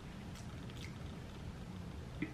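Quiet room tone: a steady low hum, with two faint soft mouth clicks in the first second.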